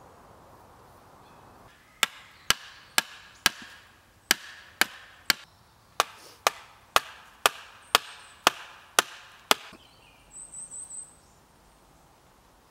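Wooden knocks, about two a second, in three runs of four, three and eight: a wooden stake or pole being struck to drive it into the ground. A brief high chirp follows near the end.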